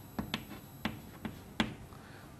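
Five short, sharp taps spaced unevenly over under two seconds: a writing tool striking a writing surface while a diagram is drawn.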